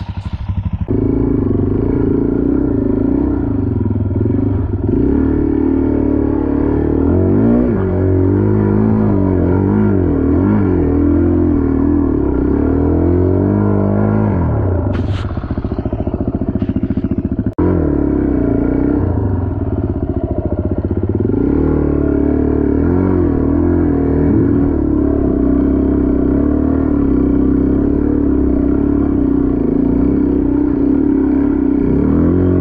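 Suzuki DR-Z dirt bike's single-cylinder four-stroke engine running while ridden, the revs rising and falling again and again with throttle changes; the sound breaks off for an instant about two-thirds of the way through.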